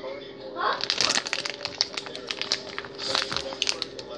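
Plastic candy wrapper crinkling as it is handled by hand: a dense run of quick crackles from about a second in until near the end.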